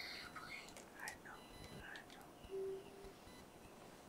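Faint, indistinct whispering over quiet room tone, with a brief hum about two and a half seconds in.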